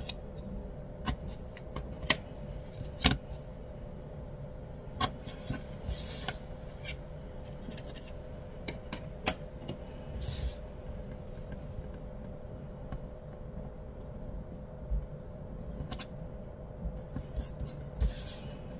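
Paper handling: planner pages and sticker sheets rustling and sliding, with scattered light taps and clicks, over a steady faint hum.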